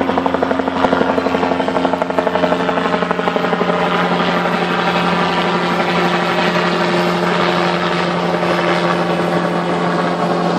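Helicopter rotor flutter, a rapid pulsing beat, for the first few seconds. It gives way to a steady engine hum from slow-moving motorcade cars as a black Chevrolet Camaro convertible rolls past close by.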